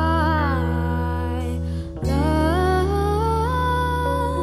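A live band playing a slow soul-pop song: a female singer sings long, sliding notes over held bass notes and keyboard chords. About halfway through, the music briefly dips and the low notes move to a new chord.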